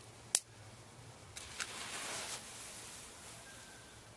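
A sharp click, then a soft whooshing hiss as a spiral of nitrocellulose (nitrated cotton string) flashes into flame, swelling briefly and fading out over about two seconds.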